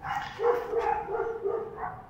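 A dog whining and yipping in a run of short, high-pitched calls with brief breaks between them.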